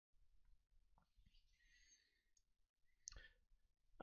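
Near silence: room tone, with one faint short click about three seconds in.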